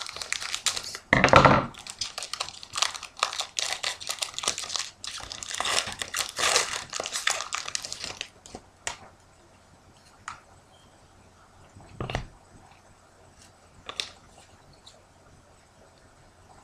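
Foil wrapper of a hockey card pack crinkling as it is cut open with scissors and pulled apart, dense and loudest just over a second in, for about the first eight seconds. After that only a few light, separate clicks and rustles of the pack and cards being handled.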